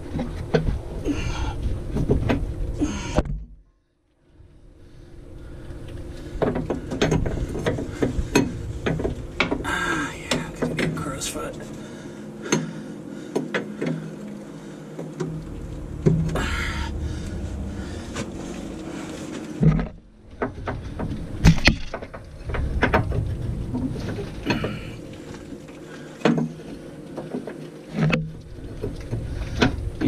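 A wrench clinking and knocking against steel power steering hose fittings on a bus chassis as they are worked at by hand, irregular metal clicks and scrapes. The sound breaks off briefly twice.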